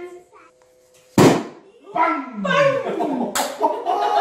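After a hush, a balloon pops with a loud bang about a second in, and young children's voices cry out in falling tones. A second sharp crack comes about three seconds in.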